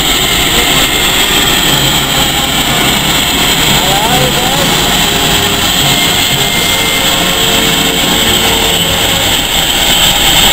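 Steam locomotive at the platform giving off a loud, steady hiss of steam.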